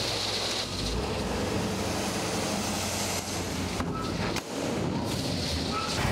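Dump truck engine running steadily while gravel slides out of the tipped bed, a continuous hiss of pouring stones over a low engine hum.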